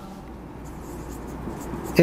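Marker pen writing on a whiteboard: faint, short scratching strokes.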